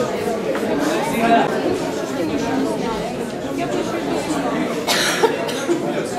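Indistinct chatter of many voices in a seated audience, with a single cough about five seconds in.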